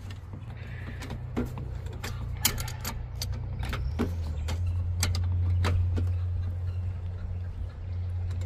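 Wrenches clicking and tapping on a brass line-set fitting as it is tightened onto the copper line: a dozen or so scattered sharp clicks. Under them a steady low hum grows louder about halfway through.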